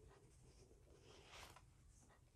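Near silence: faint room tone with a low hum, and one faint, brief rustle about a second and a half in.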